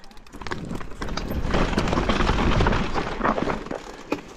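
Mountain bike rolling over loose rocks and gravel: the tyres crunch and the bike and handlebar-mounted camera rattle. The noise builds about half a second in and eases off near the end.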